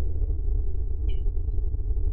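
Steady low road and engine rumble inside a moving car's cabin, with faint sustained music tones held over it.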